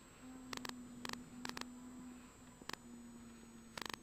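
Faint steady hum inside a moving car, broken off briefly a few times, with scattered sharp clicks.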